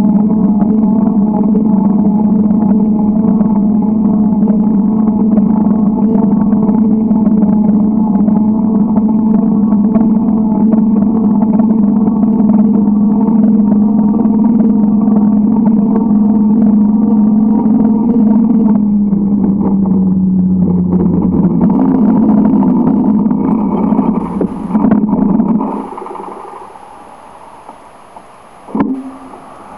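A loud, steady, low hum from a motor or engine. About twenty seconds in its pitch dips and the sound breaks up, and near the end it drops away to much quieter.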